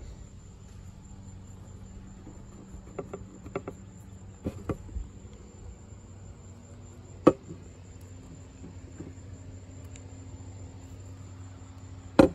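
Crickets trilling steadily in one high unbroken tone over a low hum, with a few light clicks and knocks as a bicycle seat and seat post are handled on a plywood board; the sharpest knock comes about seven seconds in.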